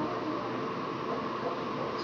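Steady background hum and hiss of running equipment, with no distinct events.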